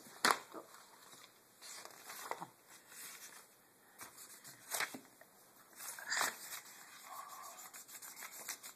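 Paper rustling and scraping from a coloring book being handled, with a few sharp knocks.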